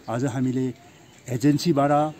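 Speech only: a man talking in Nepali, two short phrases with a brief pause between them.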